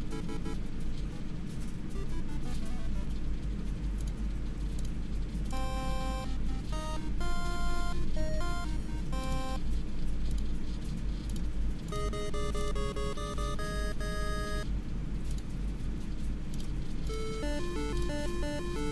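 The brushless motors of a 7-inch FPV drone beep out ringtone-style melodies, one note at a time, driven by ESCs flashed with Bluejay firmware. The tunes come in three runs of stepped notes, about five seconds in, about twelve seconds in and near the end, over a steady low hum.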